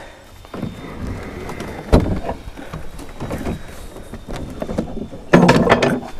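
A heavy wooden dresser being handled onto a pickup truck bed: one sharp knock about two seconds in, with lighter knocks and scraping around it.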